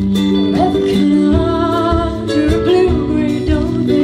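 Live band playing a song: acoustic guitar with electric guitars, and a drum kit keeping a steady beat.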